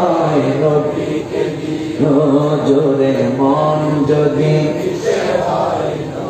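A man's voice chanting a devotional melody in long, held, wavering notes through a microphone, with a short break between phrases about two seconds in.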